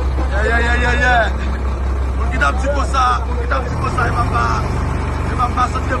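Low, steady diesel engine drone of a wheel loader at work, its note shifting a little past halfway, with a voice calling out over it.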